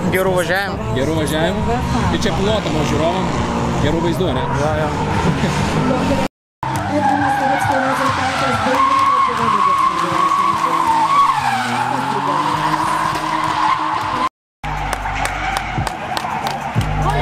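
Drift car sliding through a corner, its engine held high in the revs as one steady, slightly wavering whine over the noise of skidding tyres.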